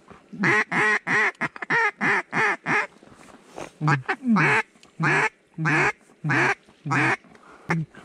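Mallard duck call blown to working ducks: a quick run of short quacks, a pause about three seconds in, then five slower, longer quacks.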